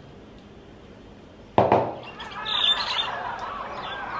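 A thick smoothie is slurped through a straw. After a quiet first second and a half there is a sudden start, then a run of wavering, squeaky gurgling slurps.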